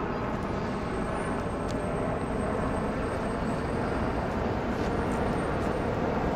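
Steady, even rumbling background noise with no distinct events.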